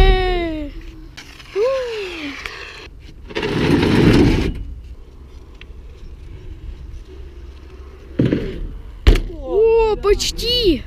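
BMX riding at a skate park: a rush of rolling and wind noise about three and a half seconds in, a short scrape near eight seconds and a sharp knock about nine seconds in, like a bike coming down on a ramp. Wordless shouts come at the start and again near the end.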